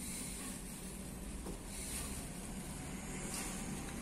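Faint crinkling of a plastic bag as stingless-bee honeycomb is squeezed by hand inside it to press out the honey, over a steady low background rumble.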